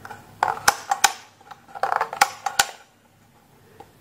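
Sharp clicks of a wall fan's speed selector switch being stepped through its settings, about four clicks over two seconds, mixed with some handling noise.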